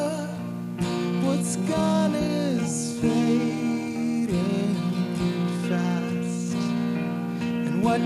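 A band playing live: a man singing over guitar accompaniment, with long held notes underneath the vocal line.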